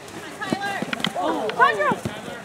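Players and spectators shouting and calling across an outdoor soccer field, with a few short sharp knocks between about half a second and a second in.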